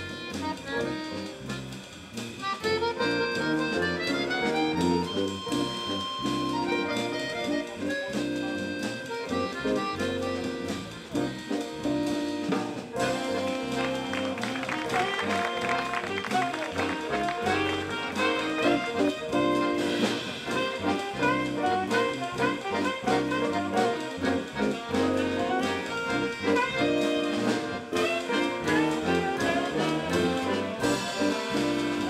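A small jazz ensemble playing live: accordion, electric guitar and bass guitar with saxophone, the texture growing fuller about halfway through.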